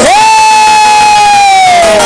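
A man's voice holding one long high note in devotional singing, sweeping up at the start and sliding down near the end.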